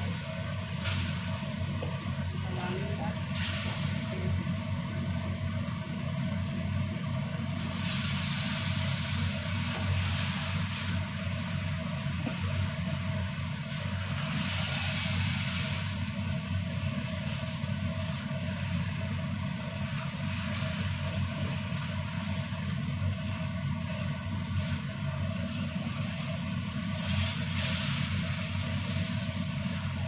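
Duck pieces and spice paste sizzling as they are stir-fried in a wok, the hiss swelling now and then as the food is turned, over a steady low hum.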